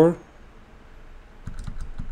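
A few quick computer keyboard keystrokes about one and a half seconds in, after a short quiet pause.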